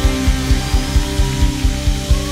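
Live worship band playing without vocals: held keyboard chords over a low pulsing beat, about four pulses a second.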